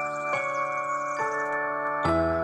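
Background music: an instrumental passage of sustained pitched notes, with new notes coming in about a third of a second and just over a second in.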